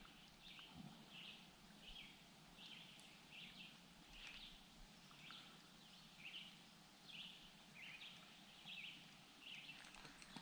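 Near silence with faint bird chirps repeating about twice a second.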